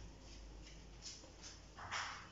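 Faint room tone, then near the end a short rubbing hiss of a duster wiping a whiteboard.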